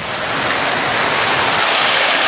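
Large fountain's water jets splashing into the basin: a steady rushing splash that grows louder over the first half second.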